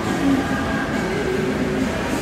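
Steady rumbling noise of a large indoor swimming pool hall, with its ventilation and echo.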